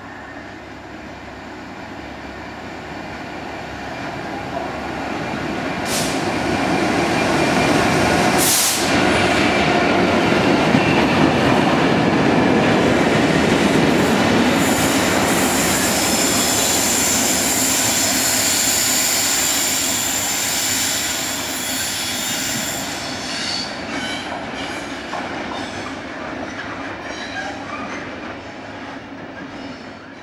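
Freightliner Class 66 diesel-electric locomotives hauling two ballast wagons past at close range, with engine and wheel rumble that builds up, holds loud, then fades away. A high steady wheel squeal from the curve joins in past the middle. There are two short sharp knocks a few seconds in.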